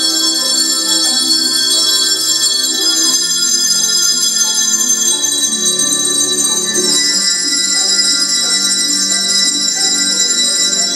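A group ringing hand bells together: overlapping sustained ringing tones that shift to a new chord every couple of seconds.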